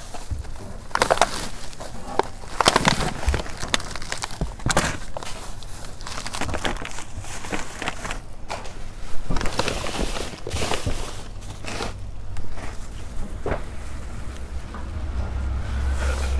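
Plastic trash bags rustling and crinkling in irregular bursts as hands dig through bagged produce in a dumpster.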